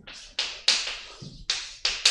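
Chalk on a blackboard while an equation is being written: four sharp taps, each followed by a short scratching stroke that quickly fades.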